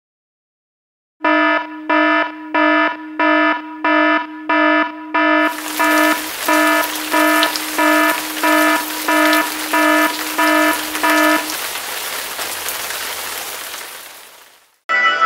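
A buzzy electronic alarm-like beep repeating about one and a half times a second, some sixteen beeps in all. About halfway through, a loud steady hiss like static joins it, carries on after the beeps stop, and fades out at the end.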